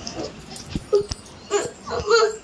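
A young child whimpering, giving a few short, high whines about a second in and again near the end.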